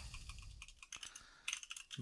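Typing on a computer keyboard: a run of faint key clicks, more of them in the second half.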